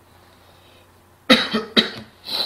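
A person coughing twice, loudly and close to the microphone: the first cough comes after about a second of quiet room hum, the second half a second later.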